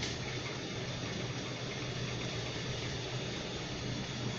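Steady background hiss with a low, even hum underneath, with no distinct events: indoor room noise.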